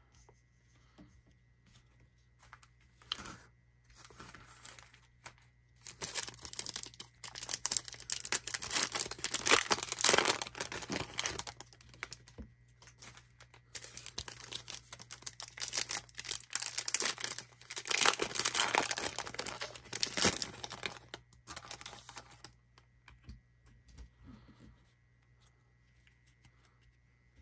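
Panini NBA Hoops trading-card pack wrapper being torn open and crinkled in two long stretches of crackling, the first starting about six seconds in and the second about fourteen seconds in, with soft card handling before and after.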